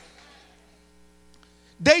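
A steady, faint electrical hum of several even tones, heard in a pause between words; the echo of the last spoken word fades out at the start, and a man's speech comes back near the end.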